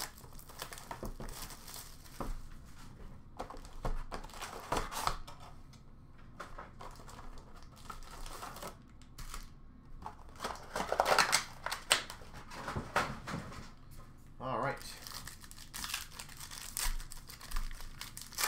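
Foil trading-card pack wrappers crinkling and tearing open, with the cardboard card box being handled, in short irregular rustles.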